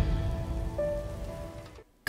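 Fading tail of a logo intro sound effect: a hiss dying away with a few faint held tones, dropping to silence just before the end.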